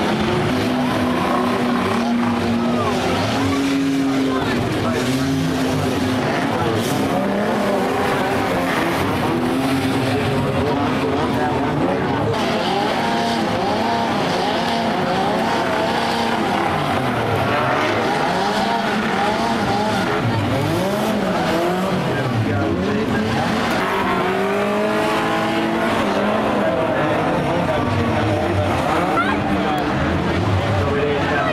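Several banger-racing cars' engines revving together on a dirt track, their pitches rising and falling and overlapping as the cars race and jostle.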